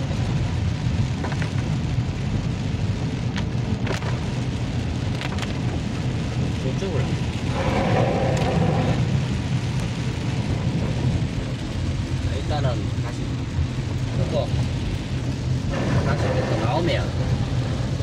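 Inside a car's cabin while driving through typhoon rain: a steady low rumble of engine and tyres on the wet road, under a hiss of rain on the car, with scattered light ticks.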